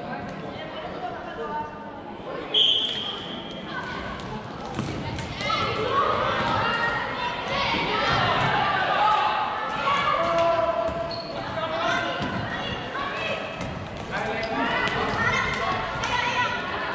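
Floorball play in a sports hall: plastic sticks clacking and the ball being struck, with shouting voices through most of it and a short high whistle blast about two and a half seconds in.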